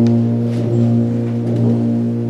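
Brass band holding a steady, low sustained chord.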